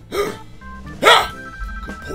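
A man's short, gruff exclamation, 'heo!', in a put-on deep voice impersonating an officer. A softer grunt comes just before it, and the loud burst comes about a second in. Soft background music runs underneath.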